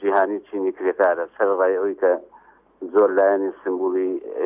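Speech only: a man talking in short phrases, with a short pause about two and a half seconds in.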